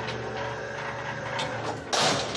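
Barred steel jail cell door rolling along its track with a mechanical rattle, then slamming shut with a loud clang at the very end that rings on.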